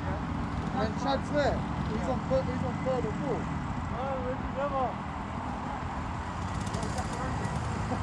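Rental go-kart engines idling with a steady low rumble as the karts sit queued close together. Voices call out over them a few times in the first five seconds.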